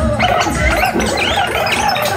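A reggae record playing loud through a dancehall sound system, with several voices shouting and hollering over it.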